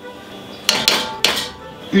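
A spatula knocking three times against an enamelled cast-iron pot: sharp clinks in quick succession, the second ringing briefly.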